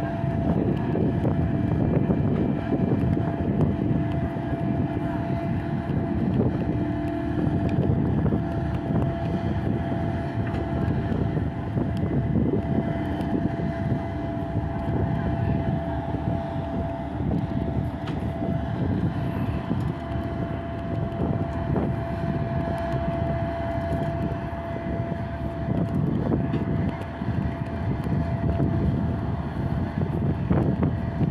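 Crawler crane's diesel engine running steadily under load as it holds and swings a precast concrete bridge girder, a continuous drone with a steady whine over it.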